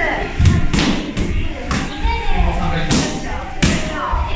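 Boxing-gloved punches and kicks landing on Thai kick pads: about six sharp, irregular thumps, two of them near the end.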